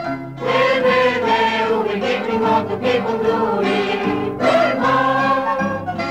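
A choir singing an original song from Pigna, in long held phrases.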